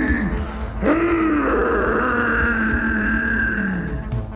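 A film monster's long, drawn-out groan in two breaths: the first falls away, the second swells about a second in, holds, then slides down in pitch near the end. Music plays with it.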